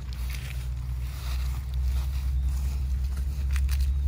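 Wind buffeting the microphone outdoors, a steady low rumble, with footsteps and rustling through tall grass, a few crisper rustles near the end.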